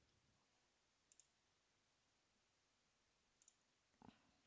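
Near silence: room tone, with two faint short clicks, one about a second in and one near the end.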